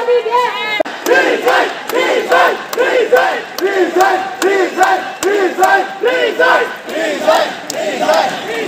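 Large crowd shouting slogans in unison: a rhythmic chant of short shouts, about two a second, louder from about a second in.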